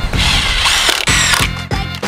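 A power drill driving a screw into a wooden board, a high whirring for about a second and a half, over background music with a steady beat.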